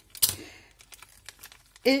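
Handling of plastic craft tools: a sharp click as plastic bone folders are set down on a cutting mat, then light ticks and rustling as a small plastic bag holding a quilling tool is picked up.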